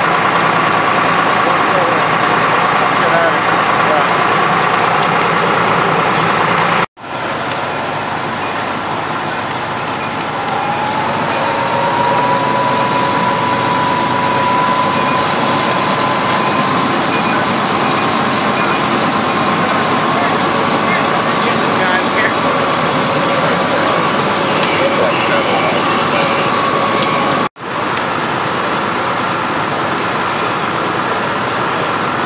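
Fire engine running at the scene: a steady engine drone with a whine that rises in pitch over a couple of seconds, about ten seconds in, then holds high. The sound breaks off abruptly twice.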